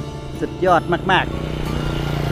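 A motor vehicle's engine with a steady low hum that grows louder through the second half, as of a vehicle drawing nearer.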